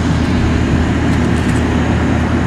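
A motor vehicle engine running steadily close by: an even, low rumble that neither rises nor fades.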